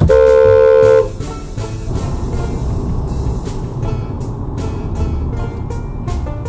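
A car horn sounds once, a steady blast about a second long at the start. After it comes background music with a steady beat.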